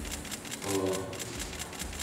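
Rapid clicking of camera shutters, several cameras firing in bursts at roughly eight to ten clicks a second, with a short stretch of a voice about two-thirds of a second in.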